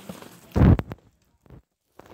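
A brief, loud rumbling rub of handling noise on the phone's microphone about half a second in, followed by a couple of faint clicks.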